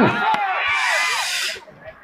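A sharp crack as a hammer breaks a stone resting on a person's body, with a second knock just after, amid the excited voices of onlookers.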